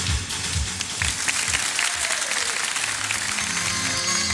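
Studio audience applauding while a pop song's kick drum beat fades out. Sustained synthesizer chords begin near the end.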